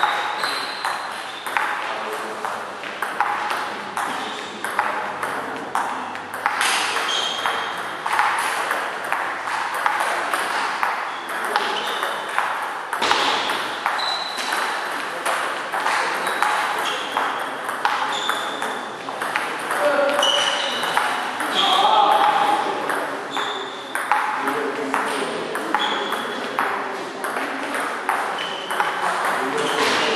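Table tennis rallies: the celluloid ball clicks off the rubber-faced bats and the table in quick back-and-forth exchanges, each hit with a short high ping, with short breaks between points. Voices murmur in the background.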